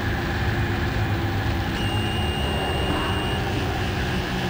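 Steady, dense rumbling drone from a horror short film's sound design, heavy and machine-like. A thin high whine comes in about two seconds in and stops about a second and a half later.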